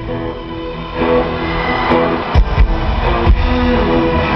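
Live industrial metal band playing through an arena sound system: distorted guitars hold steady chords, the heavy low end thins out briefly and the full band comes back in about a second in, with hard drum hits.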